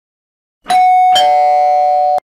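Loud two-note doorbell chime, ding-dong: a higher note strikes about two-thirds of a second in, then a lower note half a second later, and both ring on together.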